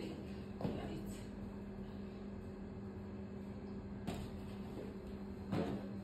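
Quiet room with a steady low hum and a few soft clicks or knocks, the loudest about five and a half seconds in.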